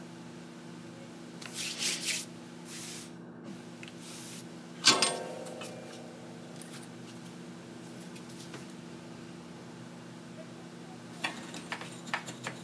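Handling noises on a workbench as small circuit boards are set into alligator-clip helping hands and a soldering iron is picked up. There is brief rustling, then one sharp metallic clack with a short ring about five seconds in, and a few small clicks near the end, all over a steady low hum.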